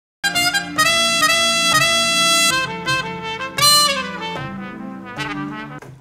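Sampled trumpet passage played back on an Akai MPC One sampler while being chopped: it starts a moment in with a long held trumpet note, then moves through several shorter notes, with a bright one near the middle and softer notes fading toward the end.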